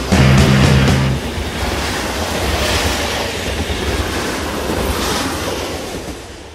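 Heavy rock trailer music breaks off about a second in, giving way to a steady, noisy rumble that carries through the end titles.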